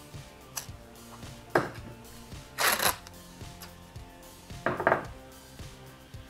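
A few brief scrapes and knocks of hand tools being put down and picked up on a workbench, the loudest a short noisy burst about halfway through, over faint background music.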